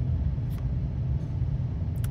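A steady low rumble, with a faint click of the cards being handled about half a second in and another near the end.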